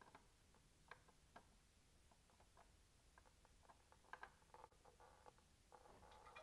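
Near silence with faint, scattered clicks and ticks from a spin-on oil filter being unscrewed the last turns by hand.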